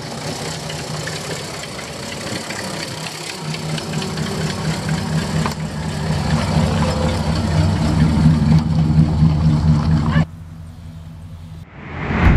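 Car engine idling steadily, heard from under the vehicle near the exhaust; the low exhaust drone grows louder partway through. It drops away abruptly near the end.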